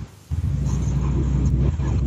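A click, then a loud, steady low buzzing drone on the call audio, the sign of a bad microphone or line connection.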